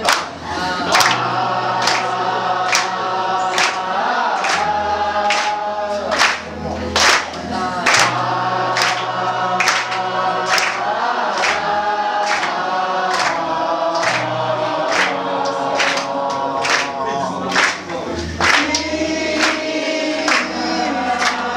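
A group of voices singing together in harmony with acoustic guitar and held low bass notes, over a sharp percussive beat about once a second.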